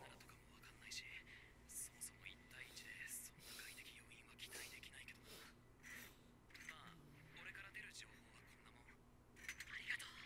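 Near silence, with faint snatches of speech that sound like whispering, a little louder just before the end.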